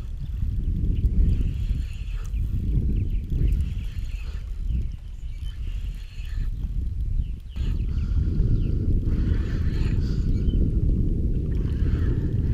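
Wind buffeting the camera microphone: a steady low rumble that swells and dips, with faint higher chirps and ticks over it.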